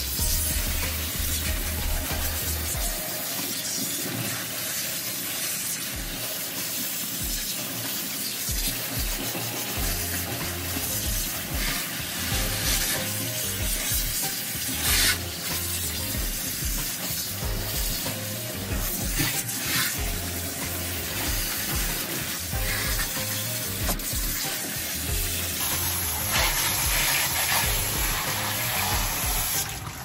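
Water spraying steadily from a hose sprayer onto a wet cat's fur and splashing into a stainless steel tub, a continuous hiss, as the shampoo is rinsed out.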